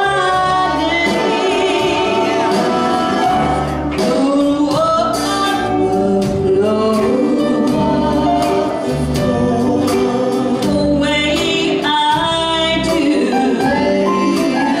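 A woman singing live into a microphone, holding notes with vibrato, over band accompaniment with sustained bass notes.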